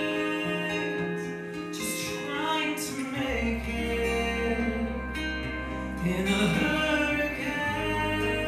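Live band music with a man singing into a microphone; a deep bass note comes in about three seconds in and holds under the song.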